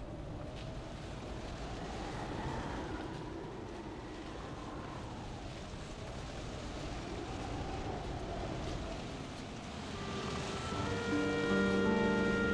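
Wind blowing with a slowly wavering, moaning tone. About ten seconds in, sustained soundtrack music notes come in and grow louder.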